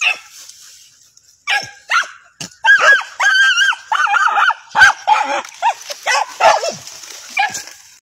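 Small dogs yelping and whining excitedly as they dig at a burrow: a few short yelps about a second and a half in, then a rapid run of high, wavering yelps and whines.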